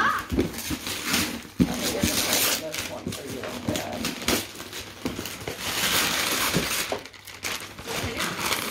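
Gift wrapping paper crinkling and tearing as it is pulled off a present by hand, with a cardboard box rustling and knocking as it is handled.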